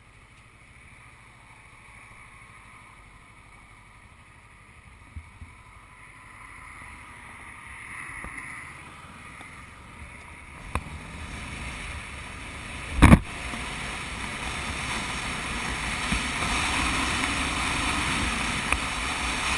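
Sport motorcycle pulling away and gathering speed along a road, its engine, wind and road noise swelling steadily louder as speed builds. A few short clicks, and one loud sharp knock about thirteen seconds in.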